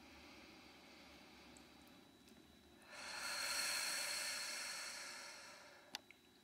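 A person taking one long, slow audible breath, a soft airy hiss that swells about three seconds in and slowly fades away.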